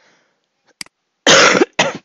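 A person coughing twice, two short loud coughs in quick succession about halfway through, after a single sharp click.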